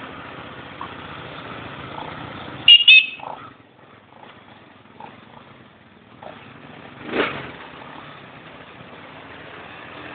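Quad-bike (ATV) engines running as the machines crawl along a rough dirt trail. About three seconds in come two short, loud high-pitched blasts. The running sound then drops quieter for a few seconds, and a brief loud burst follows about seven seconds in.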